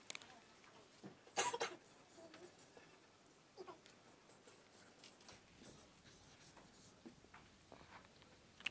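Dry-erase marker writing on a whiteboard: faint scratchy strokes, with one louder squeak of the marker tip about a second and a half in.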